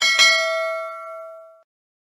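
Notification-bell ding sound effect of a YouTube subscribe animation: a sharp strike, then a ringing of several steady tones that fades away within about a second and a half.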